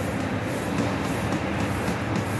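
Steady rumble and hiss of bakery machinery running, with no distinct strokes or changes.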